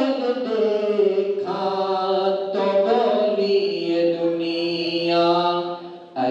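A man's voice singing a manqabat (an Urdu devotional song in praise of the Prophet's family) into a handheld microphone, drawing out long held notes that glide slowly in pitch. There is a short break in the voice near the end.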